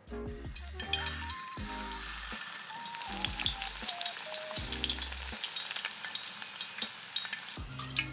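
Battered vegetable tempura, slices of squash, deep-frying in hot oil in an iron pan: a steady, dense crackle and sizzle of bubbling oil.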